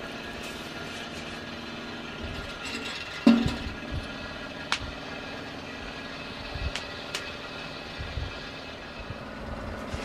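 A pot and a small sheet-metal wood stove: one loud metal clank with a short ring about three seconds in, then a few sharp ticks, all over a steady hum.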